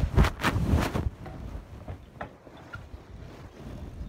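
Cloth rubbing and rustling against the phone's microphone as the phone is tucked into clothing. It is loud and scraping for about the first second, then quieter and muffled.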